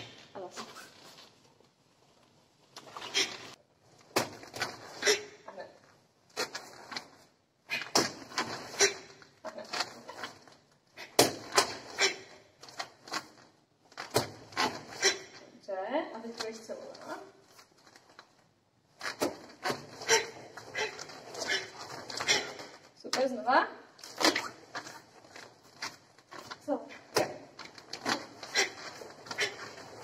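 Karate kata practice: quick runs of sharp snaps and thuds from strikes, gi cloth and bare feet on the mat, with short pauses between runs.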